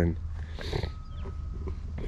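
Wind rumbling low on the microphone outdoors, with a brief soft noise about half a second in and a faint thin steady tone near the middle.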